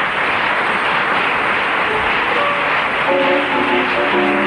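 Studio audience applauding as the programme's theme music comes up under it: held notes enter faintly after about two seconds and grow clearer near the end.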